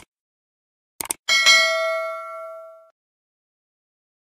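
Sound effects of a subscribe-button animation: a mouse click, a quick double click about a second in, then a bright notification-bell ding that rings and fades away.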